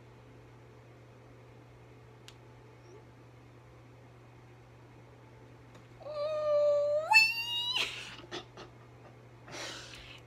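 A young woman's excited, high-pitched closed-mouth squeal about six seconds in, held briefly and then rising in pitch, followed by breathy bursts of laughter. Before it, only a quiet room with a low steady hum.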